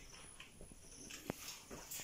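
A few faint, light taps of a wooden spatula against the juice container, the clearest about halfway through.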